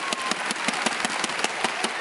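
Spectators clapping: a rapid, irregular patter of many claps.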